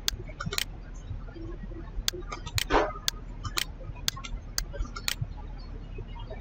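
Computer mouse clicking: about seven sharp clicks at irregular intervals, with a short rasping noise about halfway through, over a steady low hum.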